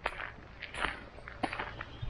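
Footsteps on a bare dirt and gravel floor, about two steps a second.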